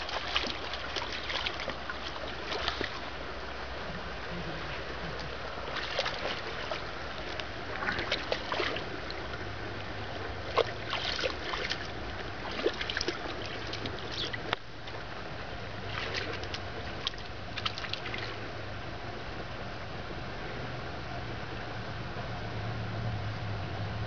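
A basset hound wading through shallow water, its paws sloshing and splashing in irregular bursts of short splashes.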